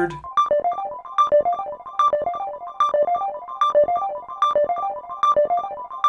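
Udo Super 6 analog synthesizer playing a fast repeating arpeggio of short, bright plucked notes, about six or seven a second, cycling up and down over a narrow range.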